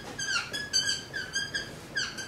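Dry-erase marker squeaking on a whiteboard as a word is written: a quick series of short, high squeaks, one per pen stroke.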